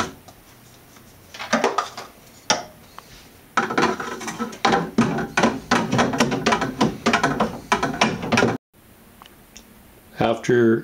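Plastic paddle stirring Epsom salts into nutrient solution in a plastic water jug, knocking and rattling against the jug as it is worked. A few short scrapes come first, then rapid irregular knocking from about three and a half seconds in that stops suddenly near the end.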